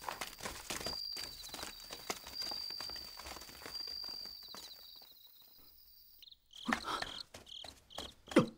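Crickets trilling steadily in a high pitch, with footsteps on dry ground as a group walks away, fading over about five seconds. About six seconds in, the trill gives way to a cricket chirping in short regular pulses, with a brief louder noise soon after.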